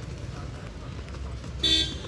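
A brief, loud horn toot lasting about a quarter of a second near the end, over a steady low rumble.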